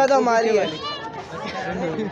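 Speech only: teenage boys talking together, several voices in quick succession.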